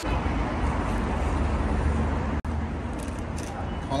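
Steady outdoor background of street traffic, a constant low rumble under a noisy hiss. The sound cuts out for an instant about two and a half seconds in.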